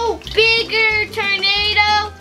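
A child singing a string of high, held notes without words.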